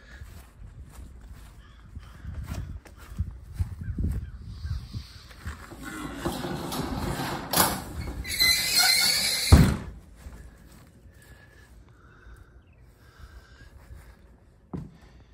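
Footsteps and handling noise of someone walking with a camera, rising to a louder stretch of noise that ends abruptly with a thump near ten seconds in, then quieter movement noise.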